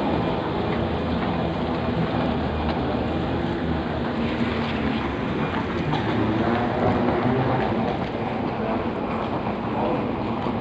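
Steady mechanical rumble of a moving walkway running, with a low hum that holds even throughout.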